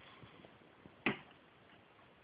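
A single sharp click about a second in, with a few faint ticks around it: metal engine parts being handled at the connecting rods.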